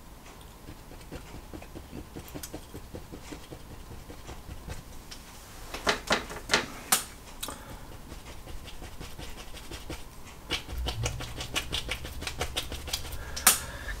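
A fan brush loaded with oil paint tapped and stroked against a stretched canvas to form pine-tree branches: a soft, rapid, scratchy tapping, with a few sharper clicks about six to seven seconds in. A low steady hum comes in for the last few seconds.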